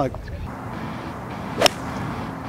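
A golf club striking the ball on a full approach swing from the fairway: one sharp crack about a second and a half in, with a brief ring.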